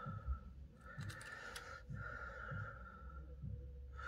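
Faint clicks of a plastic .22LR snap cap being picked up and pressed into a rifle magazine, a few light clicks about a second in, over a quiet background hiss.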